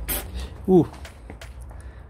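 A short, sharp hiss right at the start as trapped pressure escapes from the floor jack's hydraulic release-valve port, with the valve screwed out, followed by a few faint clicks.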